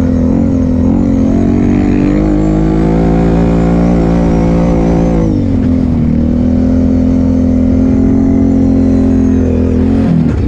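ATV engine running under throttle, heard from the rider's own camera with wind rumble on the microphone. Its pitch holds steady, drops about five seconds in as the throttle eases, then settles again.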